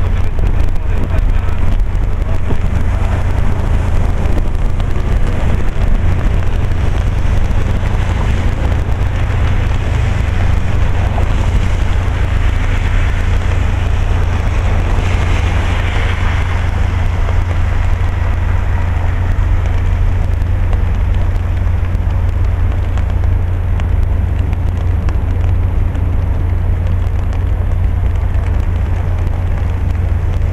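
Steady outdoor noise of rain and passing road traffic, with a strong low rumble of wind on the microphone. A hiss swells briefly about halfway through.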